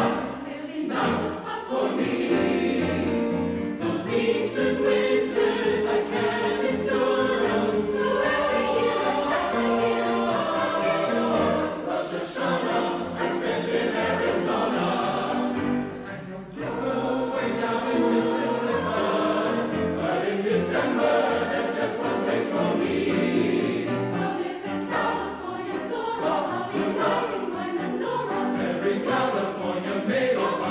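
Mixed choir singing held chords with trumpets playing along, dipping briefly in loudness about halfway before the singing swells again.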